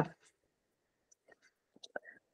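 A woman's voice trailing off at the end of a word, then a pause of near silence broken by a few faint small clicks near the end.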